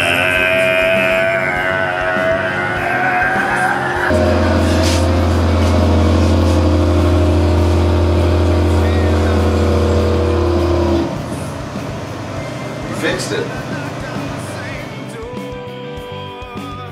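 Produced soundtrack of processed sounds. A held, wavering voice-like tone lasts about four seconds, then a loud, steady low drone with higher sustained tones runs for about seven seconds and cuts off abruptly. Quieter music with a few clicks follows.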